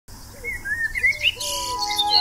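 Birds chirping in short, quick calls that rise and fall in pitch. About one and a half seconds in, music with long held notes starts under them.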